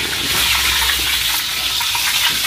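Tofu and tempe frying in hot oil in a wok: a steady sizzle with small crackles throughout.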